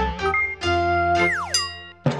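Cartoonish electronic jingle of a TV network's animated logo: a few bright synth notes, then a quick falling pitch slide a little past halfway.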